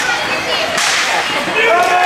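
Ice hockey play: shouting voices carry over the ice, and a sharp slap of a hockey stick comes about a second in, ringing in the rink.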